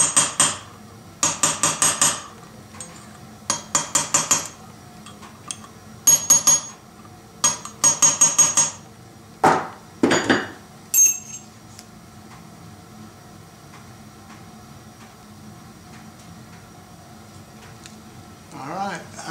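Light hammer taps on metal, tapping around the air pump's newly fitted clutch to seat it fully. The taps come in quick groups of several strokes over the first nine seconds, followed by two duller knocks about ten seconds in.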